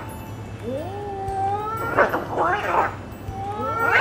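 Cat-like meowing and yowling: a drawn-out meow that rises and holds, beginning about a second in, followed by several short, quick cries and more rising calls near the end.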